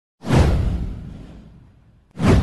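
A single whoosh sound effect with a deep low rumble under it, from an intro animation. It starts suddenly and fades away over about a second and a half.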